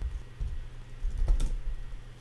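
A few computer keyboard keystrokes, the clearest about one and a half seconds in, over a low steady hum.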